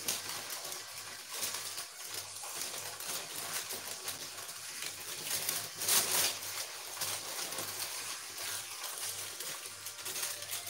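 Baking paper rustling and crinkling as a hot sponge sheet is turned over on a baking tray, in irregular bursts with a louder rustle about six seconds in, over a faint low hum.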